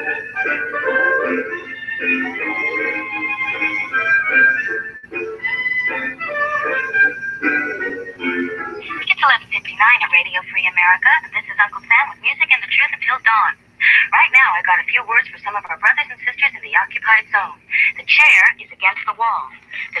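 Music for about the first nine seconds, then a voice with a thin, tinny sound, as if heard over a radio.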